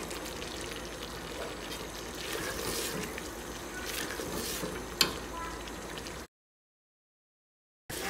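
Beef masala sizzling and bubbling as it is fried down in a steel pot and stirred with a silicone spatula: the bhuna stage, cooking the masala until the oil separates. A sharp click about five seconds in; the sound cuts off suddenly about six seconds in.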